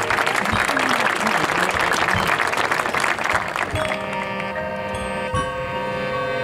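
Crowd applause that dies away a little under four seconds in, as mallet percussion and chimes take over with sustained ringing notes.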